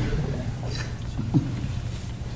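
Low steady rumble of room noise in a lecture hall, with a brief louder bump about one and a half seconds in.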